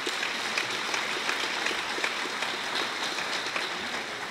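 Audience applauding steadily: many hands clapping.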